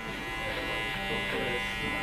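Electric hair clippers running with a steady buzz, cutting hair clipper-over-comb to blend out a ridge line in a short haircut.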